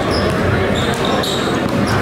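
Basketballs bouncing on an indoor court, with voices talking in the background of a large, echoing gym.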